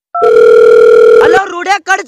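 One last short telephone keypad beep, then a loud steady telephone tone lasting about a second, cut off as a person's voice comes on the line near the end.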